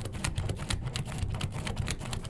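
Pen and plastic spirograph gear working over paper: rapid, irregular ticking and scratching as the gear's teeth roll around the toothed ring and the pen tip drags across the sheet.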